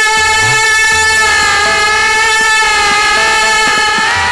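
Hindustani thumri performance: a female voice holds one long steady note over harmonium, with a tabla bass stroke bending upward in pitch about half a second in.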